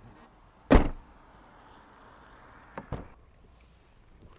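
Audi Q3's tailgate pulled down and slammed shut: one loud, sharp thud a little under a second in. Two softer clicks follow near three seconds.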